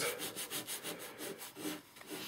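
Sandpaper rubbed by hand over carved wood in quick back-and-forth strokes, about five a second: hand sanding a carved wooden crown.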